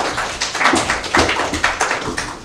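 A small audience applauding: many hands clapping in a dense, uneven spread of claps.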